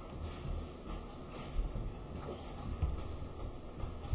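Low, uneven rumble with a few dull bumps, like wind or handling noise on the microphone.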